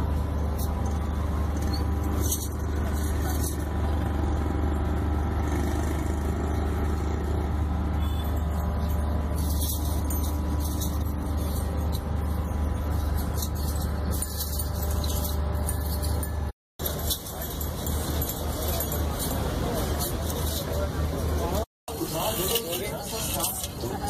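A machine running with a steady, loud low hum and a stack of steady tones, under people's voices. The sound cuts out twice in the last quarter, and after the first cut the hum is rougher.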